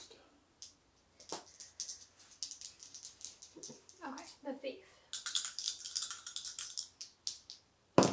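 Small hard game pieces clicking and rattling on a tabletop: scattered quick clicks, then a dense run of clicks near the end.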